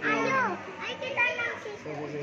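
Children's voices: a high-pitched child's call falling in pitch at the start and another short high call a little past the middle, with other people talking around them.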